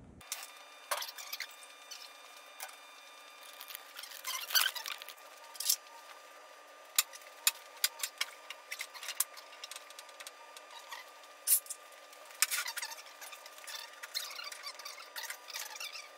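Scattered light clanks, clicks and knocks of a bare motorcycle frame and wheels being handled and set onto a metal lift table, with louder clusters a few seconds in and again near the middle-to-end. Under it runs a steady faint high hum, and the sound is thin with no bass.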